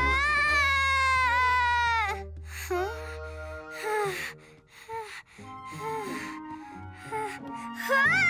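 A cartoon little girl's long, high-pitched wail, falling slightly in pitch over about two seconds, followed by short whimpers and gasps, over background music.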